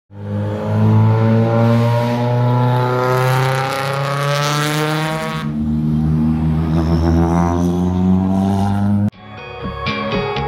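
Rally car engine revving hard and accelerating, its pitch climbing in two stretches. Music cuts in abruptly near the end.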